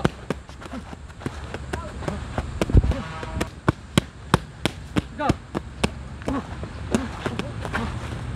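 Rapid, evenly spaced smacks of a focus-mitt drill, about three a second: padded mitts slapping against a covering partner's arms and being punched, with a short shouted command partway through.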